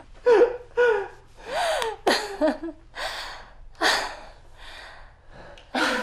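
A man and a woman laughing breathlessly while hugging: about a dozen short bursts of laughter and catches of breath, several in a high voice that falls in pitch.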